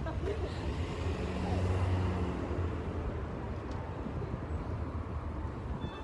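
City street traffic: a motor vehicle passes close by, its engine drone swelling about a second or two in and then fading, over the steady low rumble of road traffic.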